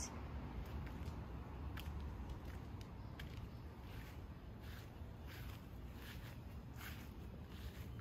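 Soft footsteps of someone walking slowly, a light step about every half second from about two seconds in, over a low steady rumble.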